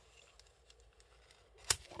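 Faint handling, then one sharp click near the end as the Cyansky HS7R flashlight snaps into the stainless-steel clip holder on its headband.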